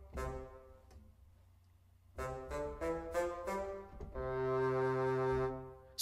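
Sampled bassoon from Cinesamples CineWinds Core in Kontakt, played from a keyboard. One note, a pause of about a second, a quick run of short detached notes, then one longer, lower held note near the end.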